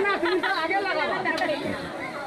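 Several people talking over one another, a group chattering close by.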